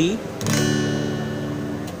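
One D chord strummed once on an acoustic guitar with a pick about half a second in, then left to ring.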